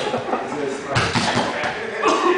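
Men's voices talking over the scuffle of two jiu-jitsu grapplers on a padded mat, with a thump about a second in as the bodies shift.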